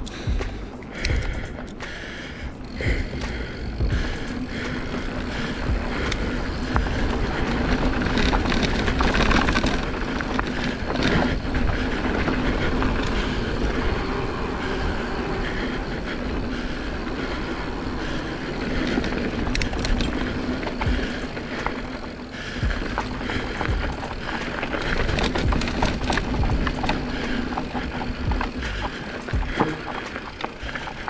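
Mountain bike rolling downhill on a dirt singletrack: steady tyre noise over the dirt and the rear hub buzzing while coasting, with wind rumbling on the camera microphone.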